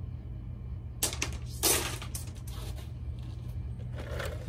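Small stones knocking and clicking together as rocks are handled in a plastic tub: two sharp knocks about a second and a second and a half in, then a few lighter clicks, over a steady low hum.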